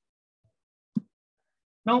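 A pause in speech that is near silent, broken by one short, soft pop about a second in; a man's voice starts again near the end.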